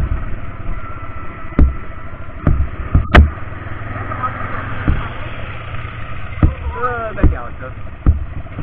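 ATV engine running steadily while riding over a rough gravel and dirt track, with a series of sharp knocks and jolts from the bumps, the loudest about three seconds in.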